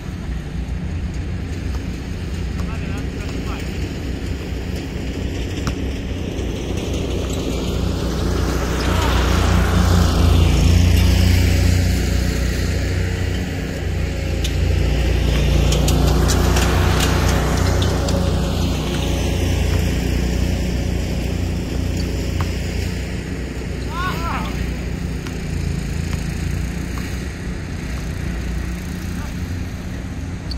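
A powered aircraft passing overhead: engine noise builds over several seconds, peaks about ten to seventeen seconds in, then slowly fades, over a steady low rumble.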